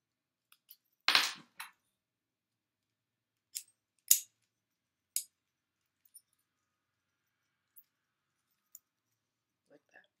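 Metal padlocks and a lockout hasp being handled and locked: a scattered series of short, sharp metallic clicks and clacks, the loudest about a second in and about four seconds in.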